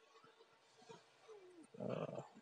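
Faint room hiss for most of it. About a second and a half in, a man makes a short falling hum, then a louder voice sound near the end.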